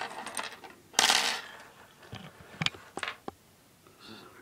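Handling noise: a loud scrape about a second in, then a few sharp light clicks and taps as a plastic collectible figure and its display base are handled close to the camera.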